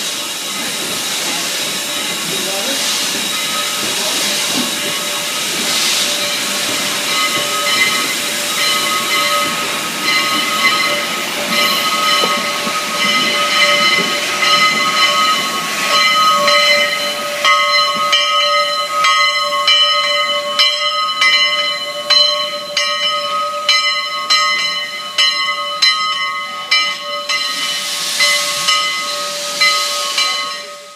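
Spokane, Portland & Seattle 700, a 4-8-4 steam locomotive, rolling slowly past with steam hissing and its locomotive bell clanging away. The bell's strokes stand out sharply in the second half, about two a second.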